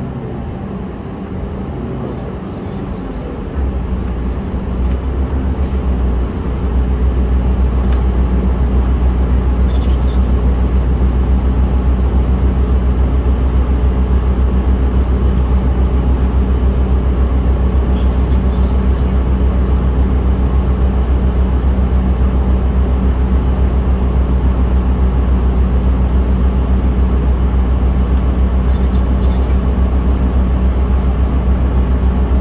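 Inside a city transit bus: a steady low engine drone that grows louder in two steps in the first several seconds, then holds steady while the bus stands idling at a red light.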